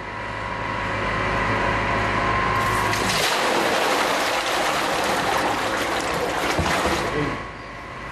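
Used cooking oil pouring from a tipped plastic barrel onto a metal mesh grate that filters it: a steady rushing splash that starts about three seconds in and stops shortly before the end. Under it runs a steady machinery hum.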